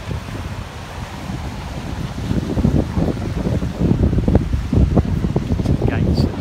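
Wind buffeting the microphone in irregular gusts, growing stronger about two seconds in.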